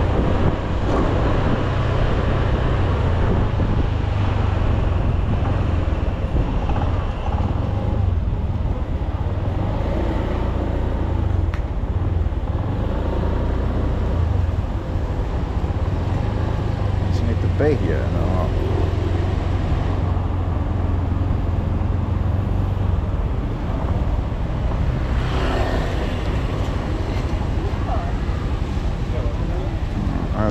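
Honda scooter's small single-cylinder engine running as it rides at low speed through street traffic, with wind and road noise on the camera microphone. The low engine hum is steady and thins about three-quarters of the way in as the scooter slows.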